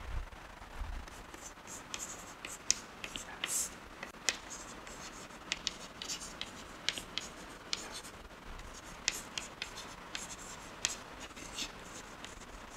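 Chalk writing on a blackboard: irregular sharp taps and short scratches as letters are written.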